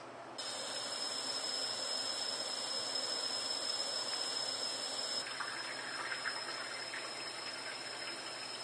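Kitchen tap water running steadily into a homemade activated-carbon bottle filter and streaming out of its neck, splashing into the sink below.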